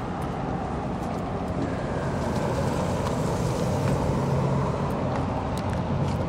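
Road traffic noise: a steady hum of vehicles on the street, swelling a little toward the middle and easing off again.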